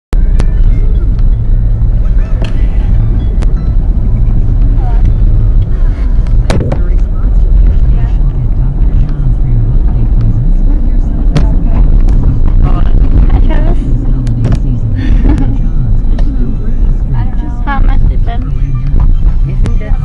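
Steady low rumble of a car driving, heard from inside the cabin, with a few sharp knocks. A voice can be heard in the later seconds.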